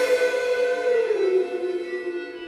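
The drums and the rest of the live rock band drop out, leaving one sustained electric guitar note ringing on, which slides down in pitch about a second in and then holds.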